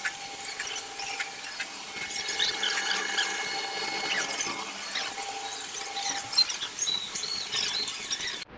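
Silk reeling machine running, its rotating reels and spindles squeaking as raw silk winds onto them: many short high squeaks over a steady faint whine.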